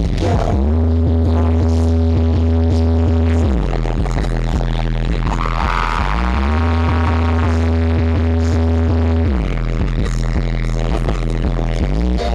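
Loud electronic R&B dance music played over a concert PA, with a steady beat and a deep bass note that slides up and holds for about three seconds, twice, heard from the audience.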